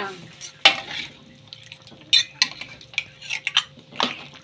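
A spatula stirring seafood in a thick sauce in a wok, with irregular scrapes and knocks against the pan.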